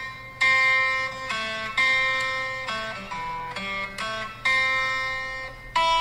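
Background music: a slow melody of single plucked notes, each starting sharply and fading away.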